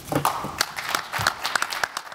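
Audience applauding, with distinct individual hand claps.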